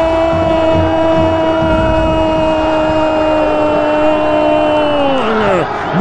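A radio football commentator's long held goal cry ('gooool') on one steady note, sliding down and breaking off about five seconds in, announcing a penalty just scored.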